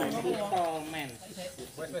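Men's voices talking in the background, fading away, followed by a soft hiss in the second half.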